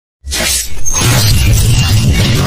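Animated logo intro sound effects: a sudden loud burst of noise a moment in, then a deep bass rumble from about a second in as electronic intro music begins.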